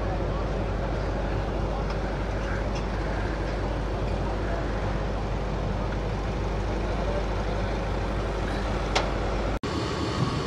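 Steady outdoor background noise: an even low rumble with faint, indistinct voices in it, and a brief sharp sound about nine seconds in. It cuts off abruptly near the end.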